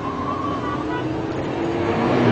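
Car engine held at high revs while the car drifts: a steady, slowly rising pitch that grows louder.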